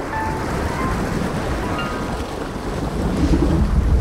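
Low rushing sound of a strong underwater current, a sound effect that swells louder about three seconds in.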